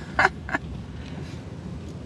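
Two short bursts of a woman's laugh near the start, then the steady low rumble of a car creeping along a dirt track, heard from inside the cabin.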